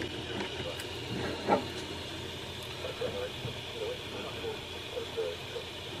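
Dapol class 73 model locomotive's small electric motor and gear drive running steadily on a rolling road, a faint even whir. It is drawing about 0.2 A, a lot for the drivetrain, which the owner suspects is down to a weak motor.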